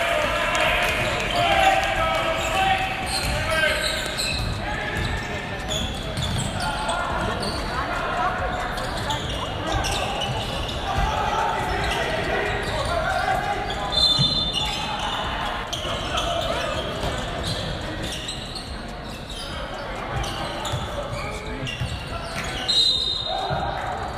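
Gym sounds during live basketball play: a basketball bouncing on the hardwood court under constant crowd chatter and voices in a large hall. Two short referee whistle blasts, one about halfway through and one near the end.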